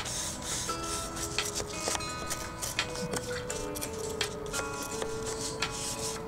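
Hand-held wire brush scrubbing over weathered painted wooden siding in repeated quick strokes, a dry rasping scrape, roughening and smoothing down old paint that is still holding tight.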